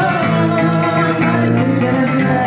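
Two guitars strummed and picked in a steady groove, with a woman singing over them.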